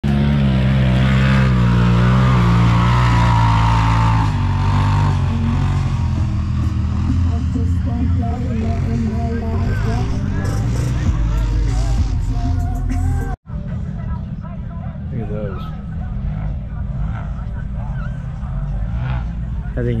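Side-by-side UTV engines running loud, one revving with a whine that falls over the first few seconds. After an abrupt cut about two-thirds of the way in, the engine sound continues lower with voices over it.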